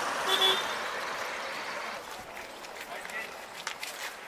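A vehicle horn toots briefly about half a second in, over street noise and voices. The sound grows quieter after a couple of seconds, and a few scattered footsteps can be heard near the end.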